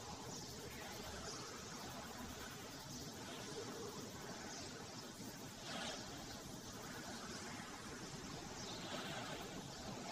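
Faint scratching of a pencil shading on paper in short strokes over a steady hiss, with a slightly louder stroke about six seconds in.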